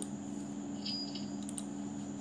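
A few faint computer-mouse clicks, around one second in and again shortly after, over a steady low electrical hum.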